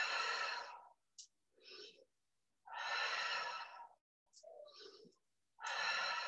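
A person breathing audibly and deeply in a steady rhythm during yoga practice: long, loud exhales about three seconds apart, each followed by a shorter, quieter inhale.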